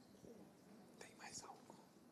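Near silence with faint distant voices, and a short soft voice about a second in.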